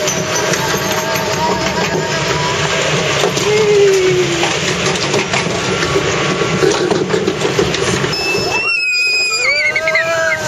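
Water-ride flume boat running along its trough with a steady rushing noise. Near the end it tips down the drop and several riders scream in high, gliding voices.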